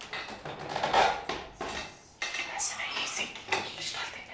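Metal door lock and handle rattling and clicking as the door is worked open, with a sudden sharp click about two seconds in and another near the end.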